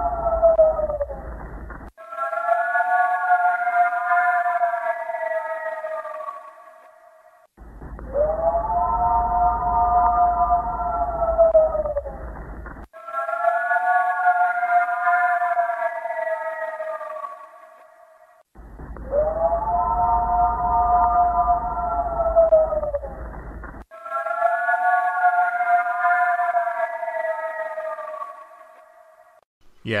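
Played-back recordings of a long animal-like howl, which the speakers say is not a coyote. Two recordings alternate, one muffled with a low hum, one clearer. Each howl lasts about five seconds, rising at first and then slowly sliding down in pitch, one after another.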